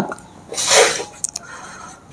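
A short, sharp breath from a man, a noisy rush about half a second in, followed by a few faint ticks of a marker on a whiteboard.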